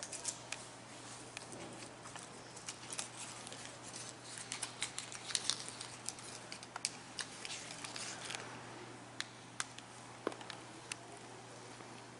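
Irregular light clicks and taps of footsteps and a handheld camera being carried and handled, over a steady low hum.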